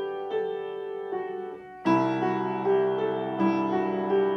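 Upright piano playing a slow melody of single struck notes; a little under halfway through, a louder chord with a low bass note comes in and the melody carries on over the held bass.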